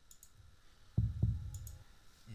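Faint computer mouse clicks. About halfway through comes a short, low thump with two sharp knocks about a quarter second apart.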